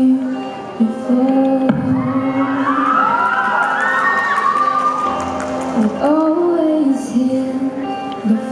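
A young female singer performs a pop ballad over a backing track, holding long notes. From about two to five seconds in, the audience cheers and whoops over the music.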